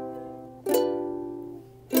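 Ukulele strumming chords, each chord ringing and fading before the next is struck, about one and a quarter seconds apart.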